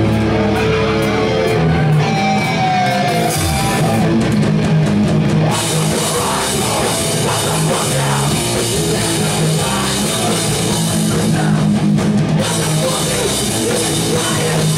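A live hardcore punk band playing loud and continuously: distorted electric guitars, bass and a drum kit.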